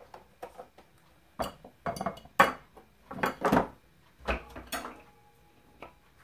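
Kitchenware being handled on a countertop: a string of separate knocks and clinks, the loudest a little over two seconds in, as a grinder cup is picked up and moved among jars and a plate.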